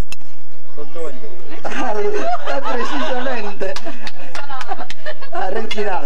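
Several people talking over one another and laughing, the chatter of a group around a table, with a sharp click right at the start.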